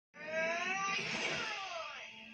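A cartoon character's drawn-out, high-pitched vocal cry, held fairly level for about a second and then sliding down in pitch.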